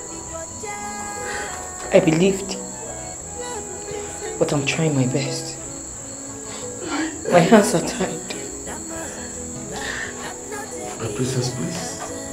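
Voices speaking in short phrases over soft background music, with a steady high-pitched whine underneath.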